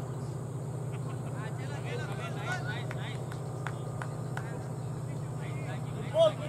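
Faint chatter of cricket players' voices across the field over a steady low hum, with a few short sharp clicks a little past the middle.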